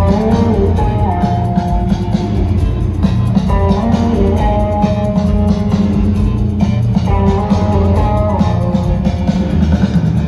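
A live rock band playing at full volume: guitar melody lines over bass and drums, heard from the crowd in an arena.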